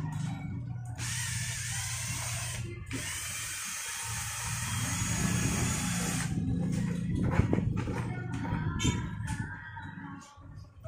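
Cordless drill stirring a thick mix in a small plastic pail. Its motor whines steadily for about five seconds, letting off for a moment about two seconds in, then stops.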